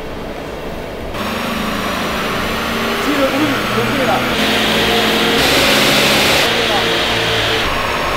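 Volkswagen Passat's 4.0-litre W8 engine run hard on a chassis dynamometer with a cone air filter fitted. The sound steps up about a second in, grows louder for several seconds, then eases off near the end.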